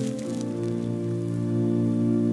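Church organ playing slow, sustained chords that shift just after the start, with a brief crackling patter in the first half-second.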